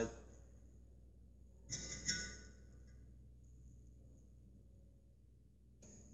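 A brief metallic creak and scrape about two seconds in, over faint room hum. It comes from a plug extractor being worked side to side in an oil gallery plug of an air-cooled VW engine case, the sound of the plug breaking loose.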